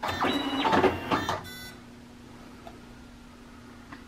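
Powis Fastback Model 20 tape binder's motor running with a whine for about a second and a half as a binding cycle finishes, followed by a short electronic tone, then the machine's faint steady low hum.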